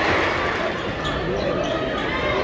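Live college basketball game heard from the stands: the ball bouncing on the hardwood court over steady arena crowd noise and voices.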